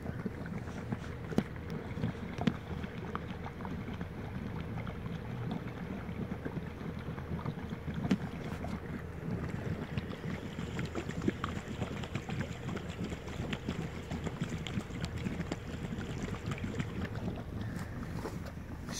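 Steady hiss of water escaping under pressure from a ruptured underground pool return pipe, with a few faint clicks: the sound of a broken pipe under pressure.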